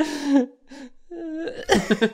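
A person's cough-like burst, followed near the end by quick pulses of laughter.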